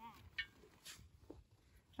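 Near silence, with the faint tail of a man's voice in the first moment and a few very faint small ticks after it.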